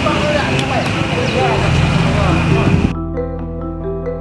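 Outdoor street noise with voices in the background, cut off abruptly about three seconds in by background music of struck mallet-percussion notes.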